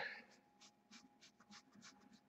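Near silence, with a run of faint, soft strokes of a small flat brush laying thin acrylic glaze onto canvas.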